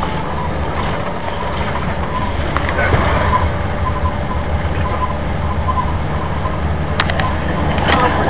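Tour minibus on the move, heard from inside the cabin: a steady low engine drone with road noise, and one brief sharp click near the end.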